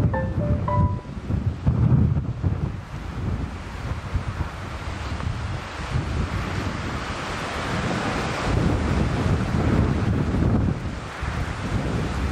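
Wind buffeting an outdoor microphone, with a gusty low rumble and a steady hiss that swells past the middle. A few short musical notes ring out in the first second.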